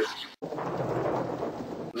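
Steady rushing, rumbling noise like rain with low thunder, cutting in abruptly about half a second in after a brief silent gap.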